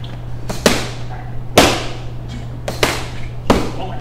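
Boxing gloves striking focus mitts: sharp slaps, mostly in quick pairs of one-two punches, about seven in all, the hardest a little over a second and a half in. A steady low hum runs underneath.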